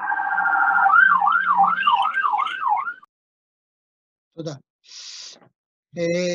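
A warbling electronic alarm or siren tone, sweeping up and down about three times a second, then stopping about three seconds in.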